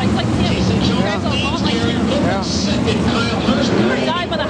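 A pack of World of Outlaws 410 V8 sprint car engines running at low speed, a steady deep rumble, with grandstand spectators talking over it.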